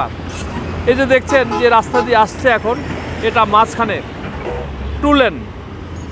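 A man talking over the steady low rumble of highway traffic, with trucks and motorcycles on the road; the rumble grows louder for a moment near the end.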